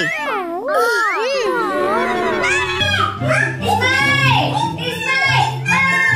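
Cartoonish voices with wildly sliding, swooping pitch over background music with a steady low bass line, then a drawn-out vocal wail.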